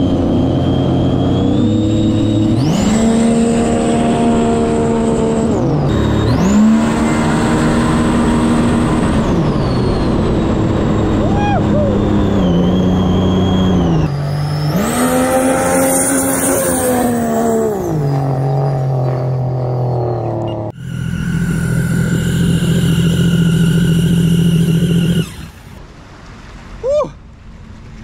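Supercharged Sea-Doo RXP race jet ski at full throttle. The engine revs surge up, hold and fall back several times, with a high whine that rises and falls with them, as the hull keeps jumping out of the water. About 21 s in, a steadier engine note takes over and cuts off near 25 s.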